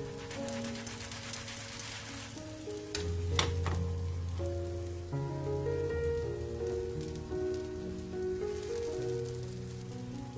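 Egg-battered zucchini slices frying in hot oil in a pan, a steady fine crackling sizzle, with one sharp tap about three seconds in. Background music plays along with it.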